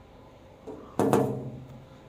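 Hand knocking on a hinged sheet-metal window shutter leaf, struck to show that the sheet is not thin. A light tap comes just before a second in, then a sharp bang about a second in that rings on briefly.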